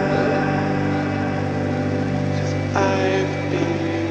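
Music: a slow track of sustained, droning tones, with a new note struck near the end.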